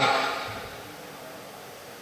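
The tail of a man's amplified voice fading away in the hall's reverberation over the first half second or so, then steady low hiss of room tone through the sound system.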